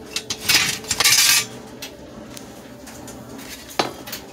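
Hard objects clattering and clinking on a cluttered workbench as it is rummaged through, in two bursts about half a second and a second in, then a single sharp click near the end.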